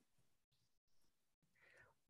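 Near silence: a pause between sentences, with a faint intake of breath near the end.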